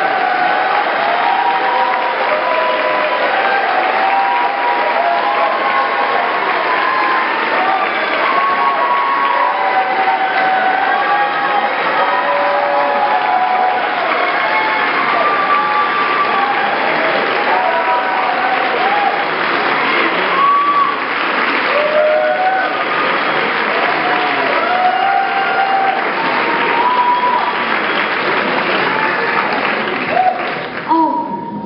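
Audience applauding steadily, with many voices cheering and calling out over the clapping.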